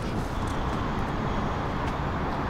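Steady drone of road traffic, an even noise with no distinct events.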